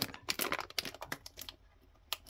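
Plastic Haribo share-size sweet bag crinkling in the hand: a rapid run of sharp crackles that thins out and stops about a second and a half in.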